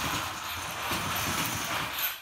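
Swerve drive robot driving autonomously across a concrete floor: its brushless drive and steering motors and swerve wheel modules make a steady, rough mechanical noise, which falls away right at the end as the robot stops.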